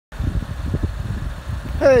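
Uneven low rumble of wind buffeting the microphone, ending with a man's voice saying "Hey".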